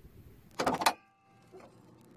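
Handling noise from a handheld camera being moved: a short scraping rustle about half a second in, then a quiet stretch with a faint high whine.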